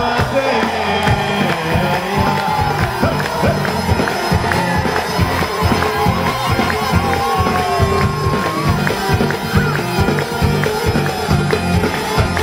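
Live Kabyle band music: a plucked mandole carries the melody over a steady drum-and-bass beat, with crowd noise underneath.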